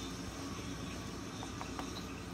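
A wooden stick stirring foaming dalgona (melted sugar with baking soda) in a small ladle over a gas flame, with a few faint ticks of the stick against the ladle in the second half, over a steady background hiss.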